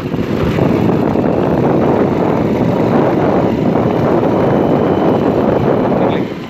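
Loud, steady rumbling noise of wind buffeting a phone microphone that is moving fast, mixed with the running of whatever the camera is riding on.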